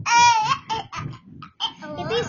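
A child laughing: a loud, high-pitched squeal right at the start, then shorter bursts of giggling. Soft low thumps recur underneath about four times a second.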